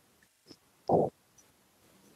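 A pause with a few faint mouth clicks, and one short, muffled low puff on a close headset microphone about a second in.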